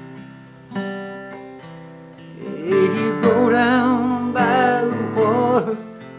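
Solo acoustic guitar strummed in a country ballad, its chords ringing out. A man's voice comes in about halfway through, singing one long, wavering line over the guitar.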